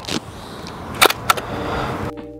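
Hasselblad 500C/M medium-format camera fired by cable release: two sharp mechanical clicks about a quarter-second apart, about a second in, after a faint click at the start.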